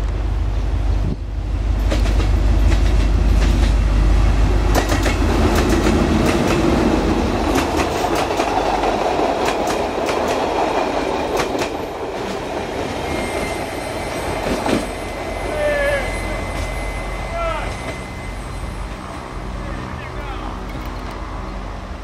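CRRC Ziyang CDD6A1 diesel-electric locomotive passing close by with a deep engine rumble, followed by its passenger coaches rolling past with a quick run of wheel clicks over the rail joints. The sound then fades as the train draws away.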